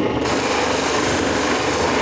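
Electric bench polishing wheel running with a piece of selenite held against it, giving a steady grinding hiss of soft stone on the spinning wheel.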